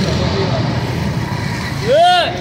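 Busy street noise: a steady low rumble of road traffic with voices in the background, and a voice calling out near the end.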